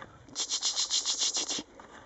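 Quick rhythmic crunching of feet in snow, about eight short scrapes a second for just over a second, then stopping.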